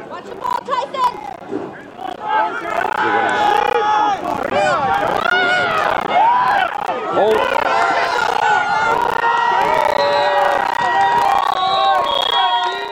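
Crowd of spectators shouting and cheering as a ball carrier breaks into the open. The noise swells about two seconds in and stays loud, with long held yells in the second half.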